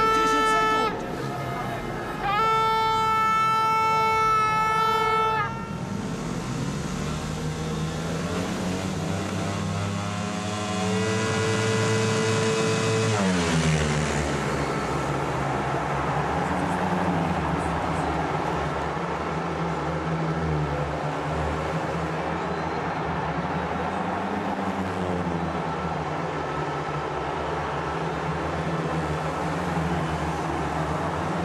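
A loud air horn blasts twice in the first five seconds. Then the 500cc single-cylinder speedway bikes rev on the start line, rising in pitch. At about 13 seconds the race starts and the four engines run at racing speed through the bends, their note rising and falling.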